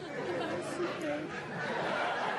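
A voice speaking briefly, then a studio audience's laughter and murmur building toward the end.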